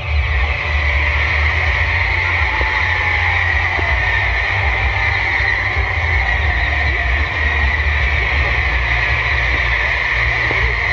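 Ground fireworks fountain (gerb) spraying sparks with a steady, loud hiss that starts suddenly at the beginning and holds unchanged, over a low steady rumble.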